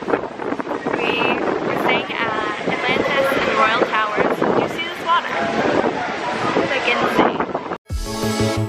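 Women's voices talking over wind gusting across the microphone.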